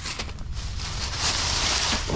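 Rustling of dry leaves and a tangle of old insulated house wire being dragged up off gravel, a hiss that grows louder through the second second.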